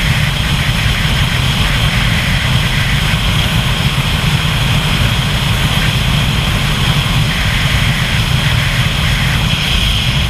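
Steady wind and road noise from a vehicle-mounted camera travelling at highway speed, with a deep, constant rumble underneath and a hiss on top.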